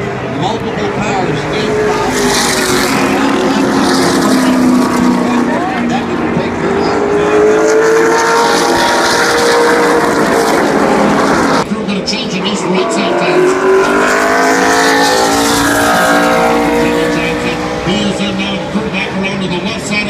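A pack of NASCAR Cup stock cars' V8 engines running past, the pitch sweeping up and falling away as the cars go by, the sound loud and continuous. An abrupt cut about twelve seconds in, after which another group passes.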